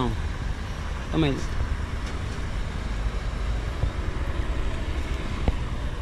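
Steady low outdoor rumble, with one short spoken word about a second in and a faint click near the end.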